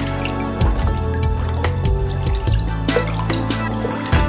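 Background music with sustained low notes, over water splashing and dripping in a sink as mask parts are washed by hand in soapy water.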